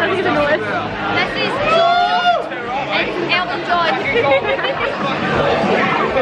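Several people chattering loudly, their voices overlapping, with one voice rising and falling in a high slide about two seconds in.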